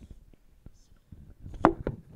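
Scattered light clicks and knocks, with two sharp, louder knocks close together near the end.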